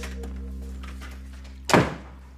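A door thuds shut once, loud and sudden, near the end, over a sitcom music cue that is fading out.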